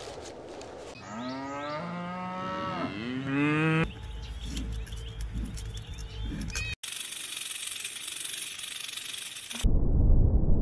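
A cow moos twice, starting about a second in; the first call is held and the second rises in pitch. Crunching chewing follows, and an even hiss fills the last few seconds.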